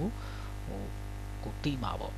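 Steady low electrical hum, with a few short voice sounds breaking in briefly near the start, about two-thirds of a second in and near the end.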